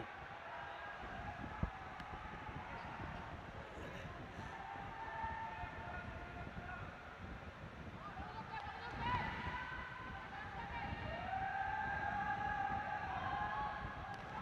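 Echoing ambience of a large indoor sports hall: a low steady rumble with faint distant voices and calls drifting in and out, and one sharp knock about a second and a half in.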